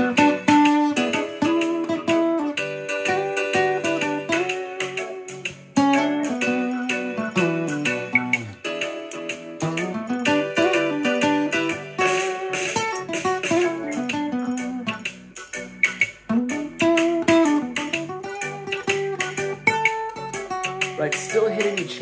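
Acoustic guitar improvising a single-note melodic solo in B minor, leaning on the minor pentatonic over a B minor, E7, G, F-sharp minor progression, with lines that climb, fall and slide between notes over steadier lower chord tones.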